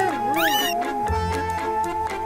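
Cartoon background music with a wavering, meow-like sound effect in the first second.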